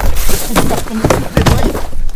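Leafy tree branches rustling loudly as they are pushed aside and brushed past, with a few dull knocks among the rustling.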